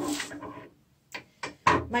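A short rustle of a sheet sliding across a wooden tabletop as it is pushed aside, followed by a brief pause and a couple of light clicks.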